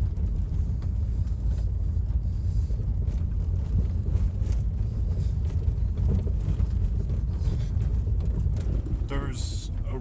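Cabin noise from a vehicle driving over a dirt and gravel track: a steady low rumble of engine and tyres, with light clicks and rattles scattered through it.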